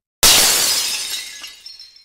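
Glass bottle shattering: one sudden crash that dies away over about a second and a half, with a few faint tinkles of glass near the end.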